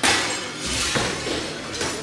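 Hammer blows and breaking glass from demolition work on a building: a loud crash right at the start, then a few lighter knocks and clinks.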